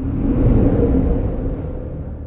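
A cinematic rumbling whoosh sound effect that starts abruptly, swells to a peak about a second in and fades away, over the low steady drone of dark, scary soundtrack music.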